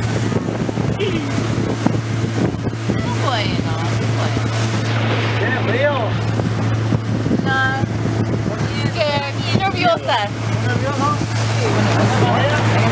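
Motor of a small open boat running steadily underway, a constant low drone, with water rushing along the hull and wind buffeting the microphone.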